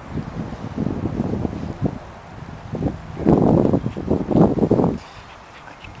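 Wind buffeting the microphone with a low rumble and rustle, rising to a louder gust for a second or two in the middle.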